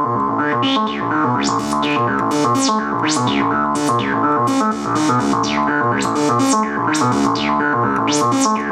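Analog modular synthesizer playing a steady repeating note pattern, its filter cutoff driven by a light-dependent resistor: as the hand shades and uncovers the cell, the tone repeatedly brightens and falls away in quick sweeps, about one or two a second.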